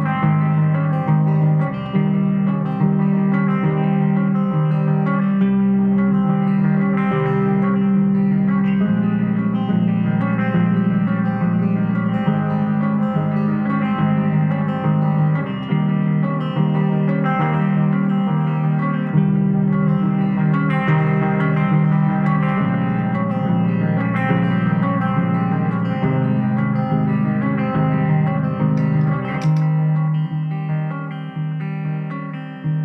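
Solo electric guitar played without vocals: a picked, repeating figure of notes over sustained low notes.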